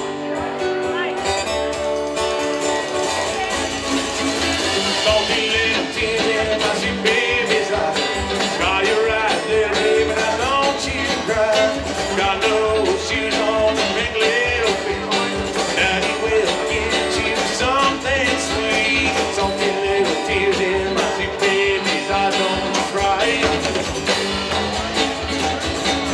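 Live country band: strummed acoustic guitar over upright bass and electric guitar, with a man singing lead.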